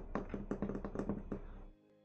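Rapid, faint clicking, about six clicks a second, that stops shortly before the end, over faint background music.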